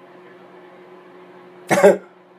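A single short cough near the end, over a faint steady hum.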